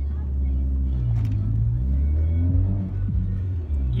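Steady low drone of a car's engine and road noise heard from inside the cabin while driving, with music from the car stereo playing faintly underneath.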